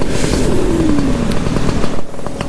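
Paramotor engine running, with wind on the microphone; its note falls steadily over about a second, as the throttle comes back for a descent.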